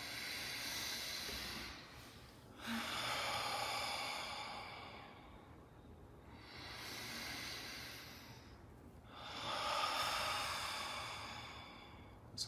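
Several people taking slow, deep breaths together: four long breath sounds, inhales and exhales of two to three seconds each, with short gaps between.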